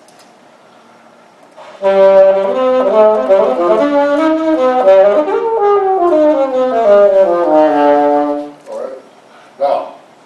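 Alto saxophone played solo: a short melodic phrase of several changing notes lasting about seven seconds, ending on a held note.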